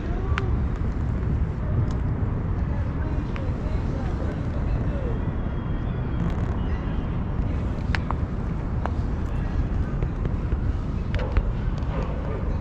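Outdoor street ambience: a steady low rumble of wind on the microphone over traffic noise, with faint voices in the background and a few sharp clicks, the loudest of them about eight seconds in.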